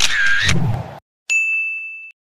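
An editing sound effect: a bright electronic ding, one high steady tone that starts sharply just over a second in and rings for nearly a second before cutting off. Before it there is a short, loud noisy sound that ends in dead silence.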